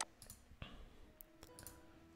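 A few faint computer-mouse clicks in near silence: a sharp one at the very start, softer ones about half a second and a second in.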